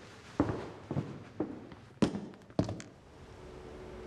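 Footsteps of hard boot heels on a corridor floor, about two steps a second. Soft sustained music notes fade in near the end.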